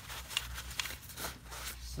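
Paper shop towel rubbing and rustling inside a throttle body's bore as it is wiped clean, in a series of short, irregular scratchy strokes.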